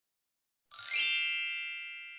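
A single bright chime sound effect, one ding a little under a second in, ringing on with several high tones and fading slowly.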